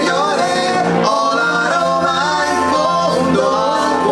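Two men singing a melodic song together into microphones over an instrumental accompaniment, with the voices gliding between long, held notes.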